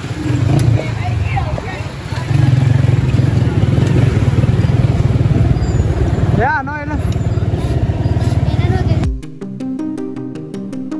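Loud, steady low rumble of wind on the microphone and street traffic while moving along the road, with voices and a brief wavering tone about six and a half seconds in. Music with a regular beat cuts in suddenly about nine seconds in.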